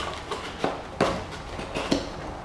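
Packaged soft-plastic baits and a cardboard box being handled: three light knocks with smaller taps between, the sharpest about a second in.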